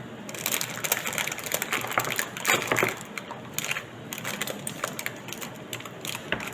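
Parchment baking paper crinkling and crackling as hands pull and fold it around a slab of fudge. The crackling is dense and loudest around the middle, then thins to scattered crackles.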